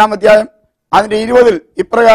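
Only speech: a man talking to camera in short phrases with brief pauses between them.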